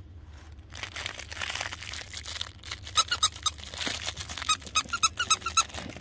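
A plush dog squeaky toy squeezed again and again, giving two runs of quick, high squeaks: a short run about halfway in and a longer one near the end.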